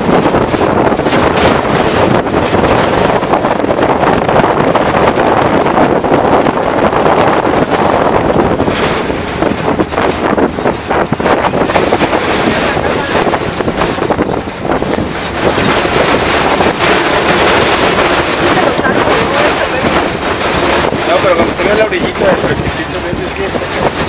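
Loud, steady rush of wind buffeting the microphone over the running and rattling of a truck on a rough dirt road, heard from its open-sided cargo bed, with frequent small jolts.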